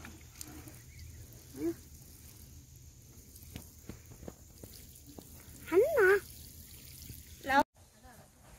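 Water sprinkling faintly from a plastic watering can's rose onto loose soil, with a few light clicks. A child's voice breaks in briefly, about two seconds in and again, louder, about six seconds in.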